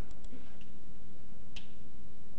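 A few computer mouse clicks, faint near the start and one sharper click about one and a half seconds in, over a steady low electrical hum.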